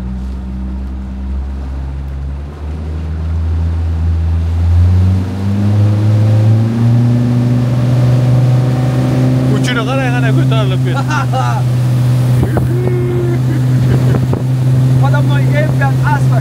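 Motorboat engine accelerating, its pitch climbing over the first several seconds, then holding steady at speed. Passengers shout "yuhuu" about ten seconds in and again near the end.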